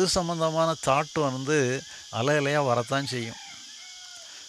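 A man speaking into a microphone for about three seconds, then pausing, over a steady, high-pitched chirring of insects.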